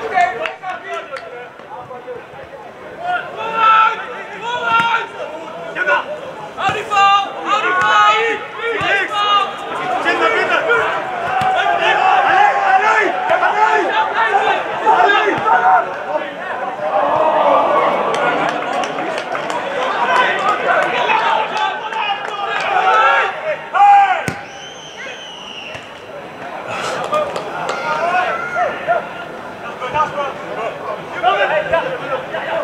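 Live pitch-side sound of an amateur football match: players shouting and calling to each other, with spectators talking, and a few sharp knocks scattered through.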